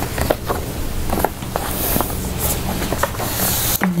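Handling noise from a hardcover book being picked up and turned over: soft rustling with a few light knocks and taps, over a steady low room hum.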